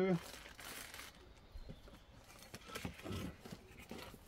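Packaging wrap crinkling as it is handled for about the first second, followed by softer, scattered handling sounds.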